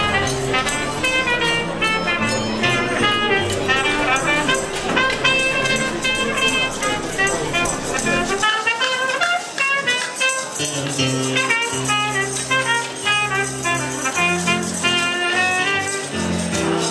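Live swing-style instrumental music on an electronic keyboard: a bright, brass-like lead melody over a bass and rhythm backing. The bass drops out for about two seconds near the middle, then comes back.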